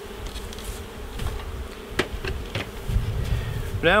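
Honey bees buzzing around an opened hive, a steady hum, with a single sharp knock about halfway through.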